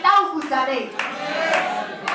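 Hand clapping in a steady rhythm, about two claps a second, over raised voices.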